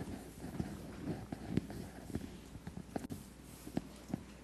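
Faint scattered taps and clicks of handling noise at a desk, several a second and irregular, over quiet room tone.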